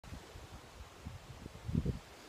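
Wind buffeting a phone's microphone: an irregular low rumble that swells near the end.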